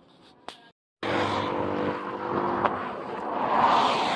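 Roadside traffic noise: a vehicle engine running steadily under the rush of passing traffic, swelling loudest near the end as a vehicle goes by. It begins after a brief break about a second in.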